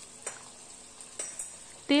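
Prawns frying in hot oil in a kadhai: a faint, steady sizzle with a few sharp pops.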